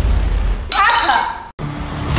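Film trailer sound design: a deep low rumble, with a sudden clinking crash and a voice about three-quarters of a second in, cut off abruptly at about a second and a half.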